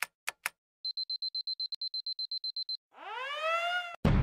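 Animated subscribe-button sound effects: three quick mouse clicks, then a rapid high-pitched beeping of about ten beeps a second for about two seconds, then a rising electronic sweep near the end.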